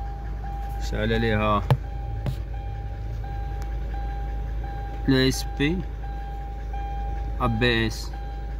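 Hyundai Santa Fe engine idling, heard from inside the cabin as a steady low rumble. Over it runs a thin, steady high tone with short breaks, like a warning beep.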